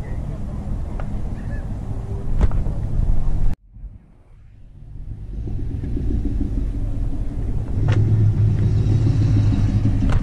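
A classic car's engine running with a low rumble at slow speed, growing stronger near the end as the car rolls past. The sound drops out suddenly for about two seconds partway through, then fades back in.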